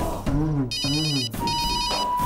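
Mobile phone ringing with an electronic trilling ringtone, two rings in quick succession, over a steady background tone.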